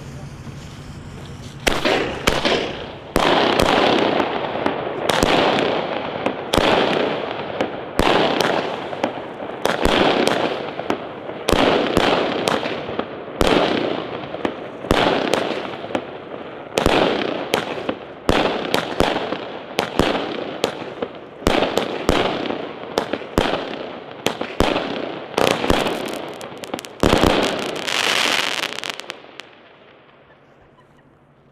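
A 25-shot, 25 mm consumer firework battery (cake) firing. It gives a sharp bang roughly every second or so, each followed by a sound that fades away before the next, and stops just before the end.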